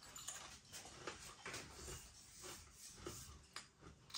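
Faint, irregular crunching of a crispy air-dried salami crisp being chewed with the mouth closed, a few soft crackles spread through an otherwise quiet moment.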